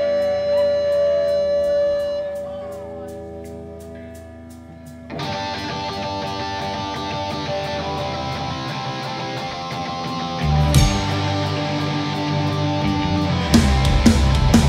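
Live punk rock band: a held electric guitar chord fades under a fast, even ticking, then about five seconds in an electric guitar starts a strummed intro riff. The bass guitar comes in near ten seconds and the full drum kit just before the end.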